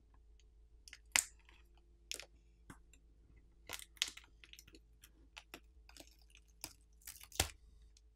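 Plastic pry tool working under a smartphone battery, with scattered faint clicks and crackles as the battery is lifted off its alcohol-softened adhesive. A few sharper clicks stand out, the loudest about a second in and near the end.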